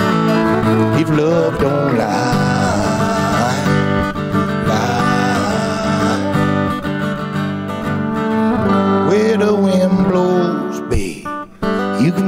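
Live country band's instrumental break: a fiddle playing sliding, bending lines over strummed acoustic guitar. The music drops away briefly near the end, then comes back in.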